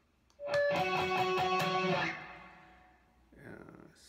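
Electric guitar playing a short run of picked octaves that change pitch several times, with the last notes left to ring and fade out about two seconds in.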